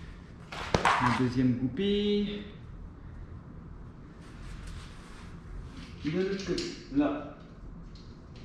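A man's voice in two short bursts, with one sharp click just before the first.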